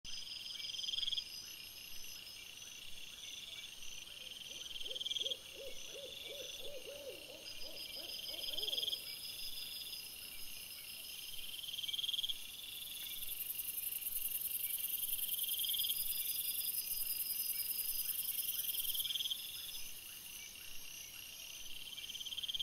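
Night insects calling: high chirping trills about a second long, repeating every couple of seconds, with a thin, very high buzz through the middle. About five to nine seconds in comes a short run of lower quavering notes, about three a second.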